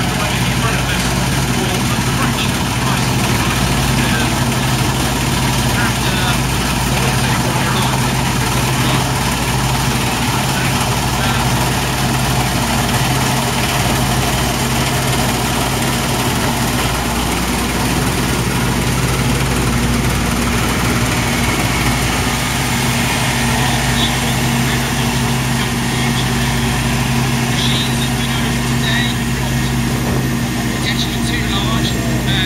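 A 1991 Sampo-Rosenlew 130 combine harvester's diesel engine and threshing gear running steadily under load as it cuts standing barley: a continuous, even mechanical drone.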